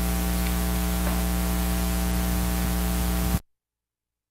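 Steady electrical mains hum with hiss on the recording, which cuts off suddenly about three and a half seconds in, leaving silence.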